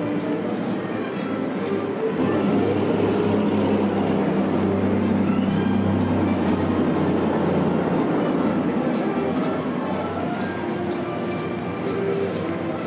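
Heavy military vehicles, diesel army trucks and eight-wheeled armoured vehicles, driving past in a column with a steady, deep engine drone that grows louder about two seconds in and eases off near the end.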